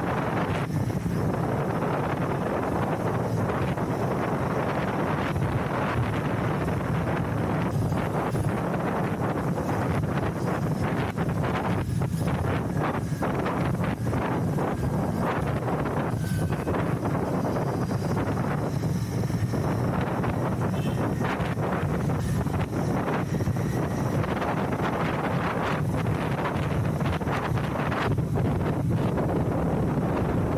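Heavy wind buffeting on the microphone while riding a Royal Enfield Continental GT 650, with the bike's 648 cc parallel-twin engine running steadily beneath it at cruising speed.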